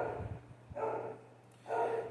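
A dog barking faintly in the background, a short bark about a second in.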